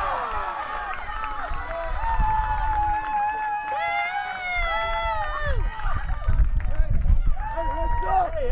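People cheering and shouting as a soccer goal is scored, many voices overlapping in long, held yells. A low rumble sits underneath.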